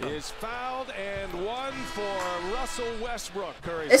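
Basketball TV play-by-play commentary from the game broadcast, heard at low level, with a few faint knocks from the court.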